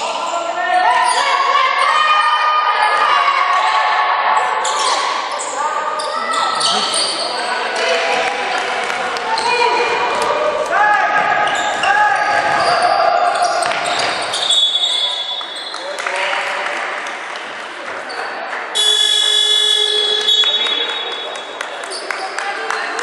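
Basketball game sound in a large sports hall: a ball bouncing on the hardwood court and players' voices calling out, with a shrill referee's whistle blast of about a second and a half near the end.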